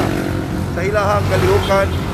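Motorcycles and cars passing on the road, a steady low engine rumble under a man's speech.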